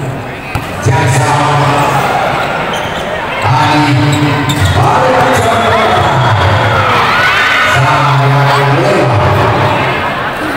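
Volleyball being hit, with sharp thumps about a second in, over loud crowd noise: voices and cheering from a packed hall.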